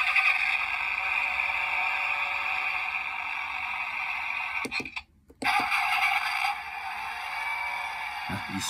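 Toy push-button engine start switches playing recorded car start-up sounds through their tiny built-in speakers, thin and tinny with no bass. One clip plays for about four and a half seconds and cuts off, and a second starts about half a second later and drops in level partway through.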